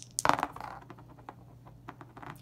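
Dice thrown onto a flat tabletop mat. They land in a quick cluster of sharp clicks about a quarter second in, then tumble with a few lighter, separate clicks before settling.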